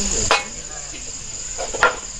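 Crickets chirping in a steady, high, even drone, with two sharp clinks of steel pots and bowls, one just after the start and one near the end.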